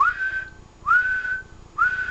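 Three short whistles into the transceiver's microphone, each sliding up and then holding one steady note, a little under a second apart. They modulate the Kenwood TS-440S on single sideband so that it puts out power into a dummy load.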